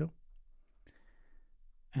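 A quiet pause in a man's voice-over: one short click, then a faint in-breath just before he speaks again near the end.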